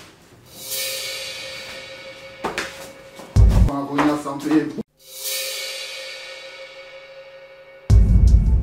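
Dramatic soundtrack sting: a cymbal-like crash that swells up and rings out, fading slowly over a few seconds, heard twice. Between the two crashes there is a loud low thump and a brief voice.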